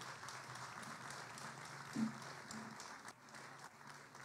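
Faint audience applause, a dense patter of many hands clapping that thins out and dies away over the last second or so.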